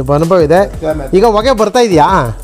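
People talking: speech throughout.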